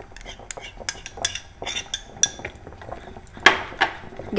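A spoon clinking and scraping against a small glass bowl and the rim of a steel pot as thick papaya paste is scraped out into the melted soap base. The clinks come irregularly, with a louder scrape about three and a half seconds in.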